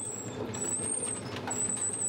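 Potato grading machine running steadily as potatoes tumble along its metal chutes.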